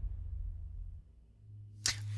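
The song's low bass fading out to near quiet, then a faint low hum and a single sharp mouse click near the end as the playing music video is paused.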